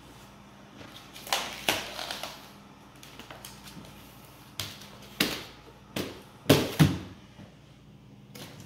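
Plastic ice-freezing cooler being handled, flipped over and set down upside down on a rubber bar mat to turn out a block of clear ice. The sound is a scattering of knocks and bumps, the loudest pair about two-thirds of the way in.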